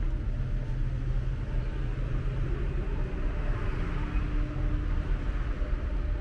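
City street traffic noise: a steady low rumble of passing cars, swelling a little about halfway through as a vehicle goes by.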